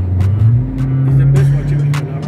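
Car engine and road noise heard from inside the cabin, the engine's low hum rising in pitch about half a second in as the car speeds up, with a few short knocks.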